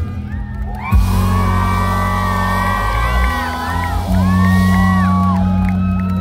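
Live rock band strikes a big chord about a second in and holds it, low bass notes ringing on, while the crowd whoops and shouts over it.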